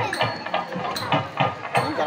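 Sharp percussion clicks at a steady beat, about two a second, with voices over them.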